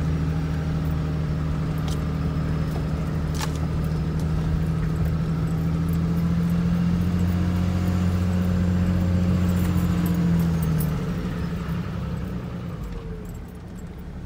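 Truck engine running steadily as heard from inside the cab on a dirt road, with a few sharp clicks and rattles. About eleven seconds in the engine note fades and drops away as the truck eases off.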